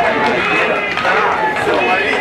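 Several voices shouting and calling over one another, with no break, as on a football pitch during an attack on goal.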